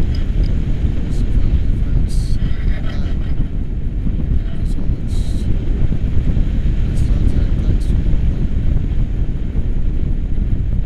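Loud, steady wind buffeting the camera's microphone as airflow rushes past during a tandem paraglider flight, a continuous low rumble.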